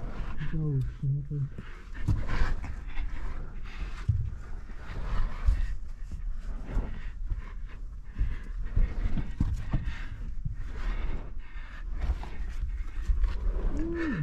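A person breathing hard while crawling through a tight dirt mine passage, with uneven scraping and rustling of body and gear against soil and rock, and a short grunt or mutter about a second in.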